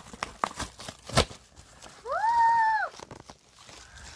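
Paper padded mailer envelope being torn open and crinkled by hand, with a sharp rip about a second in. Midway a child lets out one high, arching exclamation about a second long, the loudest sound, before the crinkling goes on faintly.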